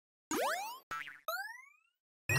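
Cartoon-style springy sound effects added in editing: three short twangs, the first and last sliding up in pitch, with dead silence between them.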